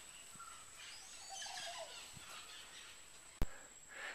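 Quiet outdoor background with faint bird chirps, and a single sharp click near the end.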